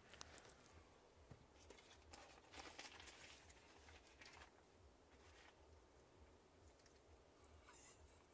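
Near silence, with faint, soft rustling of baking paper and pizza dough being handled.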